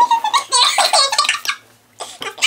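Two girls laughing together, the laughter dying away about one and a half seconds in.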